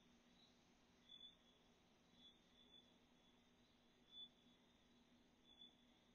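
Near silence, broken by a few very faint, short, high-pitched blips.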